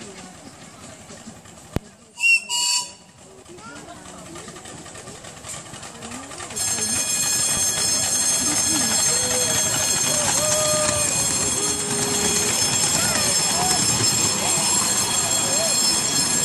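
A miniature ride-on steam locomotive's whistle gives two short toots about two seconds in. About six and a half seconds in, the train's running noise jumps up and stays loud and steady as it comes past with its passenger cars.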